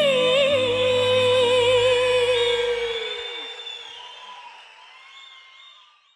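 A female singer holds the closing note of a live song, slightly wavering, over the band's low accompaniment. The accompaniment stops about three seconds in, and the voice and its reverb fade gradually to near silence by the end.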